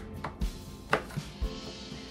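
Kitchen knife slicing green bell pepper on a wooden cutting board: about five sharp knocks of the blade against the board in the first second and a half, the loudest about a second in.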